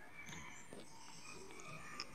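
Faint background noise with a few short, faint high-pitched chirps.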